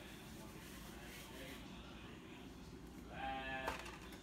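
Hand mixing a soft, wet salmon croquette mixture in a plastic bowl, faint against a low steady background. About three seconds in there is a short pitched voice sound lasting about half a second, followed by a click.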